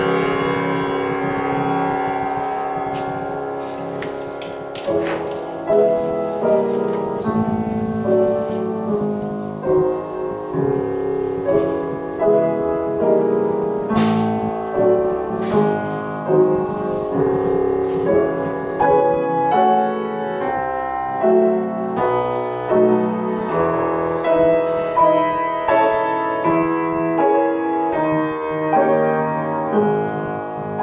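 Solo grand piano played live. A held chord dies away over the first few seconds, then from about five seconds in chords are struck in a steady pulse, about one a second.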